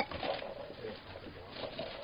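Quiet, faint rustling of Christmas wrapping paper as a toddler tears at a present, with a soft coo-like vocal sound from the child in the first half.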